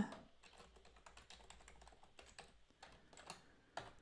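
Faint typing on a computer keyboard: a quick, irregular run of soft key clicks as a password is typed in, with a couple of slightly louder keystrokes near the end.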